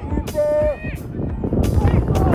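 Outdoor football match sound with wind rumbling on the microphone and a short, drawn-out call from a voice about half a second in.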